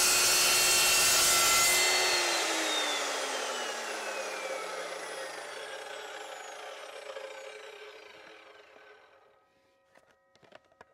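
Evolution S355MCS 14-inch metal-cutting chop saw running at full speed, then switched off about two seconds in. The motor and blade wind down over several seconds, the whine falling steadily in pitch and fading out near the end.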